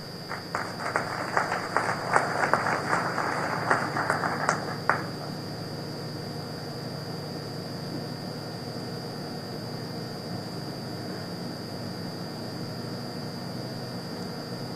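Audience applauding for about five seconds, then stopping fairly suddenly. A steady low hum carries on under it and after.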